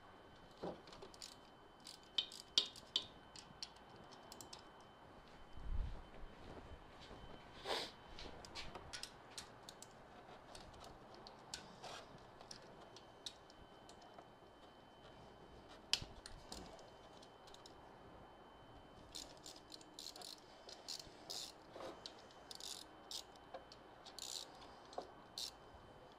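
Faint, scattered metallic clicks and rattles of hand tools on the camshaft bearing-cap bolts of a Kawasaki ZR7 inline-four as the caps are loosened about a millimetre. This frees up clearance between cam and valves, to check whether low compression on two cylinders comes from zero valve clearance rather than a blown head gasket.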